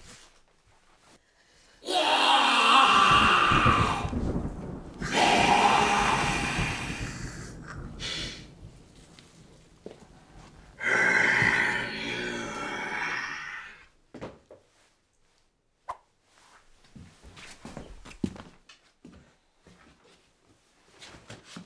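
Three long, breathy, rasping vocal outbursts, each fading away, from a possessed woman. A few faint clicks and rustles follow, with one sharp click near the end.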